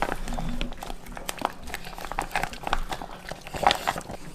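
A dog eating wet food from a stainless steel bowl: quick, irregular licking and chewing smacks. Near the end comes the crinkle of a plastic food pouch being squeezed into a bowl.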